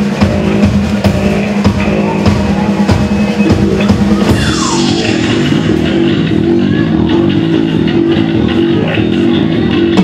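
A live instrumental rock trio playing: drum kit, electric bass and keyboards. About four seconds in, a falling glide sweeps down through the mix.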